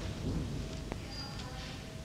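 Steady low rumbling background noise of an open courtyard, with one sharp knock about a second in.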